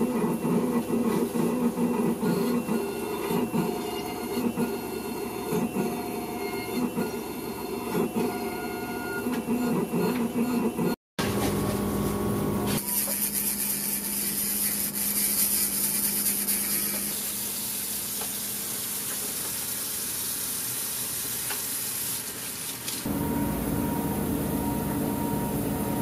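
CEREC milling unit's two burs grinding a ceramic crown block under water spray, a loud, fluttering machine grind for about the first eleven seconds. After a break, a dental lab handpiece with a diamond disc runs with a high, hissing whine as it trims the milled crown, and a steadier hum takes over near the end.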